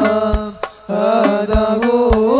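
Sholawat devotional singing by male voices with hadroh frame drums (rebana) struck in rhythm. The singing breaks off briefly a little before the middle, then comes back with the drums.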